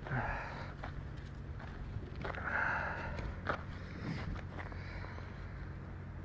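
Footsteps and scuffing on a dirt yard, two louder scuffs near the start and about two and a half seconds in, over a steady low hum.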